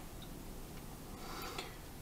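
Quiet room tone in a pause between spoken sentences, with a single faint click about a quarter second in.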